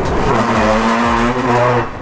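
Drift trike's hard plastic rear wheels sliding and scraping across a smooth store floor, with a steady low hum held over it for about a second and a half. The noise dies away near the end.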